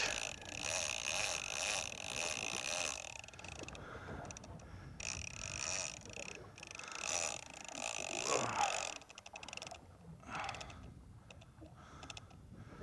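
Offshore fishing reel whirring in bursts as line is cranked in or taken against the drag while a hooked fish is fought: a rapid, buzzy rattle for a few seconds at a time, with short pauses between.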